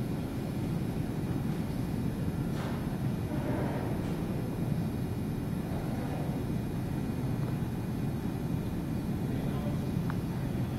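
Steady low background rumble of room noise while nobody speaks, with a few faint, indistinct sounds about three and six seconds in.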